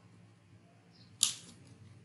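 Quiet room tone with one sharp click a little over a second in, dying away quickly.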